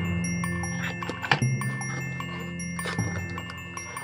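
Background music of chime-like bell tones, with a few short cardboard rustles and knocks as the flaps of a parcel box are folded open.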